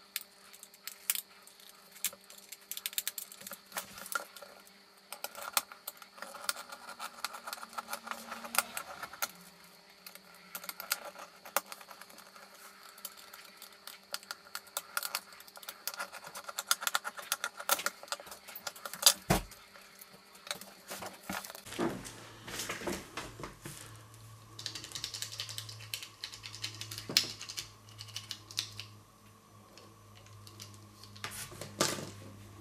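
Small plastic parts of a Philips AquaTouch shaver head clicking and rattling as they are pried and handled with a small screwdriver: scattered light clicks and taps throughout, with one sharper knock just after the middle. A faint steady hum comes in about two-thirds of the way through.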